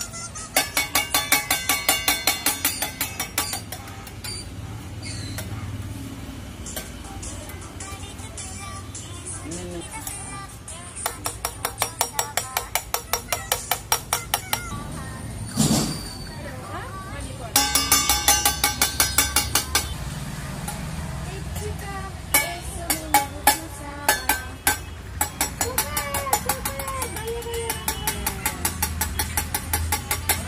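Hair-cutting scissors snipping close to the microphone in quick runs of about seven cuts a second, several runs with short pauses between, as a child's hair is trimmed.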